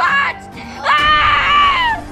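A child's high-pitched scream: a short cry, then a long held one starting about a second in that falls in pitch as it ends.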